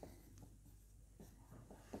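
Faint strokes of a marker pen on a whiteboard as words are written: a few short, irregular scratches and taps.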